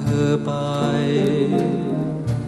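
Male voice singing a Thai luk krung love song over band accompaniment, holding the words 'thoe pai' ("you away") on a long sustained note.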